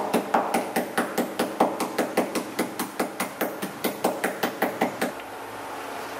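Peanuts wrapped in paper being pounded on a wooden chopping board with the back of a metal ladle, used in place of a mallet to crush them. The blows come quickly and evenly, about five a second, and stop about five seconds in.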